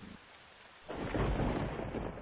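Steady rain falling, then a loud, deep roll of thunder breaks in about a second in.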